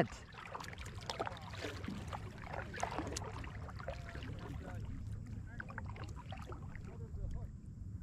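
Faint, distant voice carrying across the water in snatches, over a steady low rumble of wind on the microphone and a few small clicks.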